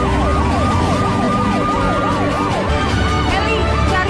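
Emergency-vehicle siren sound effect: a wail rising and falling about three times a second over a second, steadier siren tone, weakening about three seconds in.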